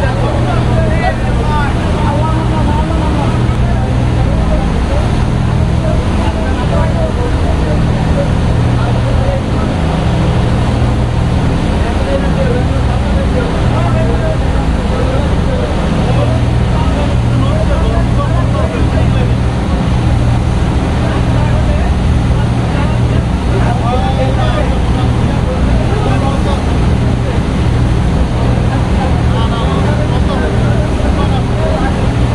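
Passenger launch MV Green Line-2 under way: its engines drone steadily beneath the loud rush of the propeller wake churning white behind the stern. Voices can be heard under the noise.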